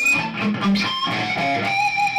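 Electric guitar played with pinch harmonics: two picked notes, the second about a second in, each ringing with high, sustained overtones.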